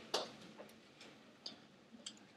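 Faint, short clicks, roughly two a second, over a quiet background.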